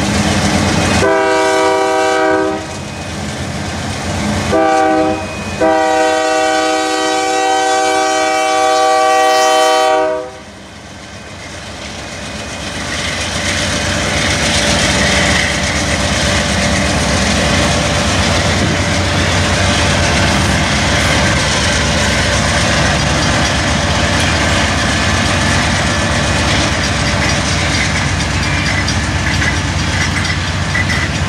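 A diesel freight locomotive's air horn sounds a chord in a long blast, a short one and a long held blast, the pattern used for a grade crossing. It is followed by the steady rumble of the lead locomotives' diesel engines and steel wheels clicking over rail joints as they pass close by.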